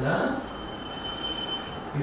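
A man's word trails off, then in the pause a thin, steady high-pitched whine sounds for about a second and a half over faint room background.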